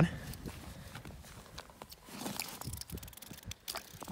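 Faint rustling and scattered light crunches and clicks: snow and clothing moving as someone kneels at an ice-fishing hole, hand-pulling tip-up line.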